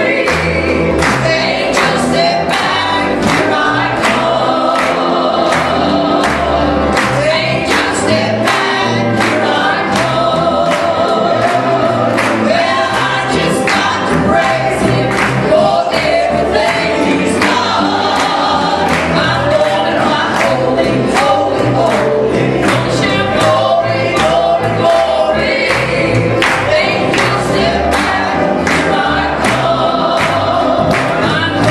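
Gospel trio singing in harmony into microphones, with piano accompaniment and a steady beat about twice a second.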